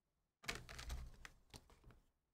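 Light clicks and rustling of a trading card and its plastic holder being handled and set down on a table mat: a cluster of clicks about half a second in, then a few separate clicks.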